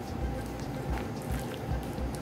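Soft background music, with faint scraping ticks of a wooden spoon stirring egg yolks and cassava dough in a glass bowl.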